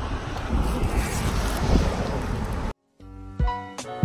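Wind buffeting the microphone outdoors, which cuts off suddenly a little before three seconds in. After a brief silence, background music with distinct notes begins.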